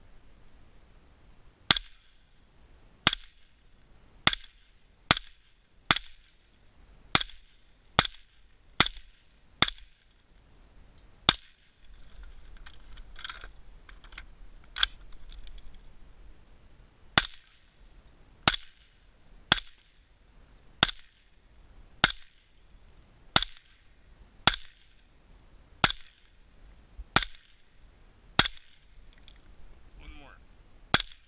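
Semi-automatic shots from an Aero M4 rifle fitted with a Gemtech Halo suppressor, firing M193 5.56 mm ball ammunition: more than twenty sharp cracks at roughly one a second, with a short pause near the middle.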